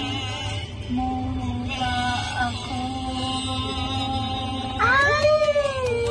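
Two women singing a Tagalog song karaoke-style over music, holding long notes, with a loud sung note that rises and then falls near the end.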